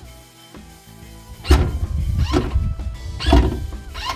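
Ford Mustang Mach-E hood latch releasing twice, each time a short electric whirr ending in a clunk, as the hood pops up. The latch is powered through the bumper access-hole leads from an external 12 V supply because the car's own 12 V battery is dead.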